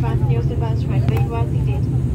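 A cabin-crew announcement is spoken over the aircraft's public-address system, over a steady low drone in the airliner cabin.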